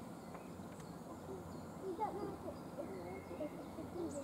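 Indistinct voices of people talking, over a faint, steady low rumble.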